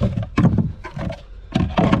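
Plastic kayak hatch cover being set back on the hull and pressed into place: a few irregular hollow knocks and scrapes, loudest about half a second in and near the end.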